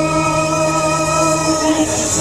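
Vietnamese quan họ folk singing: a singer holds one long steady note, then slides into a new phrase near the end.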